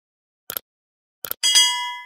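Subscribe-animation sound effects: a mouse click about half a second in, a quick double click just after a second, then a bright notification-bell ding that rings on and fades.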